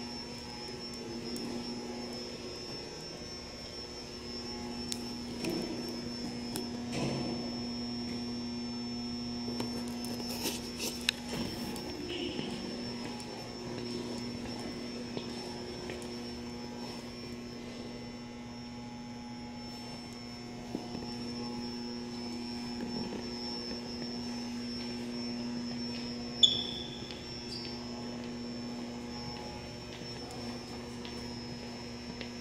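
Steady low electrical hum with a thin high whine above it, the background tone of a large indoor hall, broken by a few faint knocks and one sharp click near the end.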